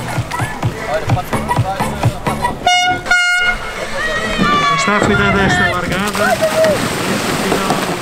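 Two short air horn blasts about three seconds in, the start signal for a surfski race, over voices on the beach.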